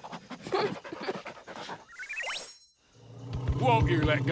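Cartoon sound effects: quick small-animal sniffing and panting, then a short rising electronic zip about two seconds in. After a brief gap, wavering voice-like calls over a low hum begin near the end.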